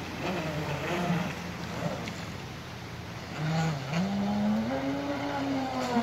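Brushless electric motor of a Thundertiger Avanti radio-controlled speedboat running across the water, its pitch climbing about halfway through and then holding high.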